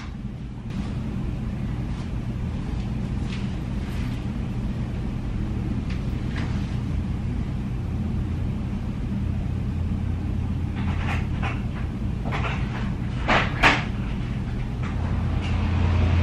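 Steady low hum of the room, with soft rustling of a blanket as a person lies down in bed. Two sharp clicks close together come near the end.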